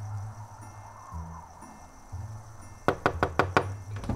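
A quick run of about six knocks on a front door near the end, over soft background music with low bass notes.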